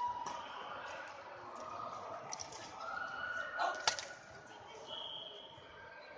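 Badminton rackets hitting a shuttlecock during a doubles rally, a few sharp strikes with the loudest near the fourth second, mixed with short high squeaks of shoes on the court mat and background voices echoing in a large hall.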